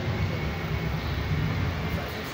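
Steady, muffled background noise of a crowded hall picked up on a handheld phone, with no clear voices or music standing out.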